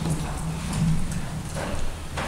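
Footsteps in a church sanctuary: a few soft knocks over a low, steady room rumble.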